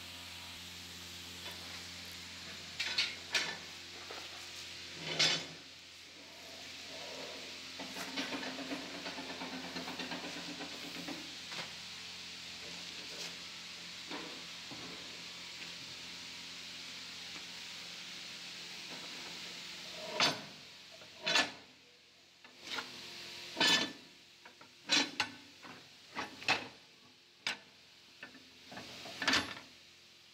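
Steel machine parts knocking and clinking as they are handled and fitted, over a steady hiss. There are a couple of sharp clicks early on and a rasping stretch a few seconds later, then a quick run of about ten sharp knocks in the last ten seconds.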